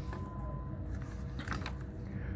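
Comic books being handled and shuffled by hand: a few short crinkling rustles about one and a half seconds in, over a steady low hum.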